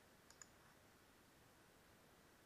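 Near silence, with two faint computer mouse clicks in quick succession about a third of a second in.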